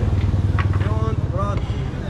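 A small motorbike engine idling, a steady low rumble, with voices over it.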